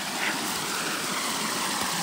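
Small stream of water running over rocks, a steady rushing.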